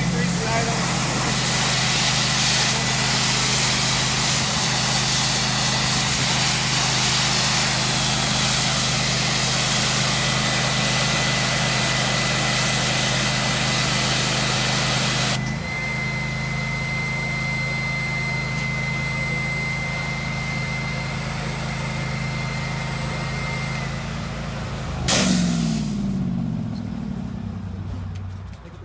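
High-pressure spray from a pressure washer wand hitting a vinyl wash mat for about fifteen seconds, over the steady run of the Alkota pressure washer's engine and vacuum filtration system. The spray then stops while the machinery keeps running with a thin steady whine. About 25 seconds in comes a sudden loud burst, and the machine's note falls away.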